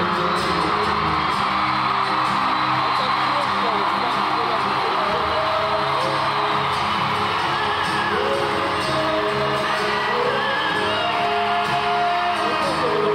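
Live acoustic rock song: acoustic guitars, one a double-neck, strumming under singing voices, with an arena crowd singing along and whooping throughout.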